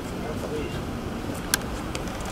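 Steady low street rumble with faint murmured voices, and a sharp click about one and a half seconds in.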